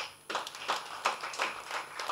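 Scattered audience clapping: a few hands applauding in an uneven run of sharp claps, several a second, heard from the hall at a distance.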